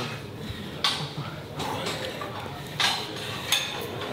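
Weight-room noise with metal clinks of weights and gym equipment, four short sharp clinks spread through a steady background hum.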